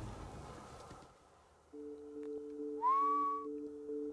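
A single short whistle, rising quickly and then holding its pitch for about half a second, over a steady low two-note drone of background music that starts about halfway in.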